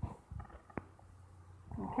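A few faint sharp clicks over a low hum and rumble.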